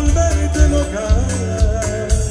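Norteño band music: an instrumental passage with a wavering accordion-style melody over bass and a steady beat.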